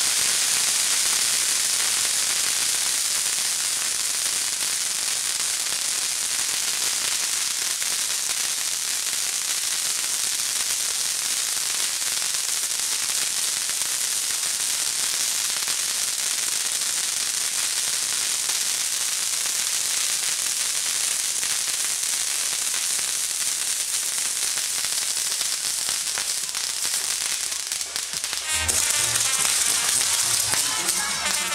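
Castillo fireworks burning: the spinning pinwheel pieces atop the towers give a steady, dense hiss and crackle of showering sparks, with no loud bangs. Music comes in near the end.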